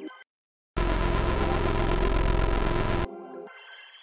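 A hard-bass preset on the Arturia Analog Lab V software synthesizer being tried out. About a second in, a loud, heavy, bright bass note sounds for about two seconds and cuts off abruptly, leaving a quieter fading tail.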